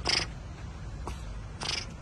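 Water buffalo blowing air out sharply through the nose: two short bursts about a second and a half apart.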